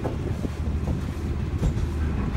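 Boat engine running with a steady low rumble, with a few sharp knocks and rattles on top.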